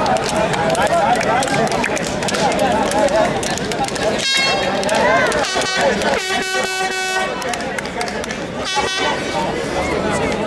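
Crowd of spectators chattering, with horn blasts cutting through: a short blast about four seconds in, a longer steady one of about a second and a half after six seconds, and another short one near the end. The horns are typical of air horns blown by fans at a local football match.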